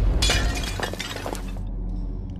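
Animated fight-scene sound effect: a burst of sharp cracks and crashes that starts just after the opening and dies away after about a second and a half, over a low, steady music bed.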